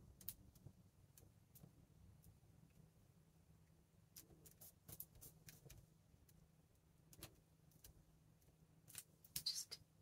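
Near silence, with faint scattered clicks from fingers handling and pressing paper envelope pockets on a tabletop. A few come close together near the end.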